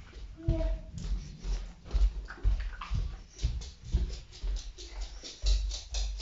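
Footsteps on a wooden floor and handling bumps from a handheld camera carried at a walk, with a brief high whine about half a second in.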